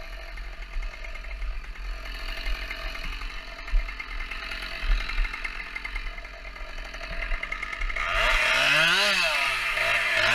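Chainsaw idling steadily with a few knocks. About eight seconds in, it is revved up and down roughly once a second as it is used to cut limbs off a felled spruce.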